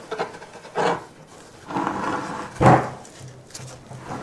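Plush-covered board perch being twisted by hand onto the threaded end of a sisal-wrapped cat scratching post, with intermittent rubbing and scraping of board against post and one louder knock about two and a half seconds in.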